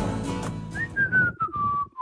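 A person whistling a tune in single clear notes that step downward in pitch. It starts a little under a second in, as the tail of a song's backing music fades out.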